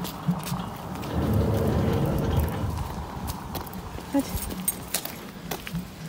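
A child's rubber-booted footsteps clicking on paving stones, with a rushing swell of noise that rises about a second in and fades away after about two seconds.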